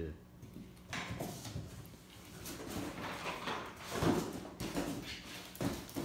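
Irregular clunks and clatter of a metal turbocharger being pulled out of a cardboard box and handled, loudest about four seconds in, with voices in the background.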